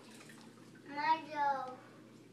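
A toddler's voice giving one drawn-out, wordless call of about a second, starting near the middle, its pitch rising and then falling.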